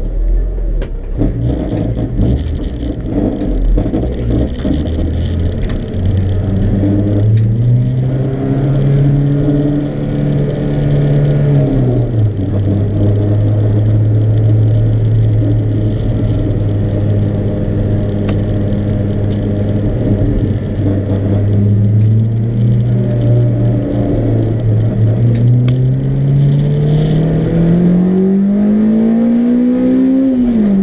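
Track car's engine heard from inside its stripped-out cabin as the car pulls away. The engine note climbs, drops at a gear change about twelve seconds in, and holds steady for a long stretch. Near the end it revs up hard and shifts again.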